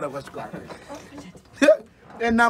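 A man's voice speaking quietly and brokenly, with one short, loud vocal burst near the end.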